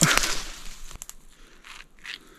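A wild purpur fruit being torn open by hand: a loud crackling tear of its rind at the start that fades within about half a second, then a sharp snap about a second in and a softer rustle near the end.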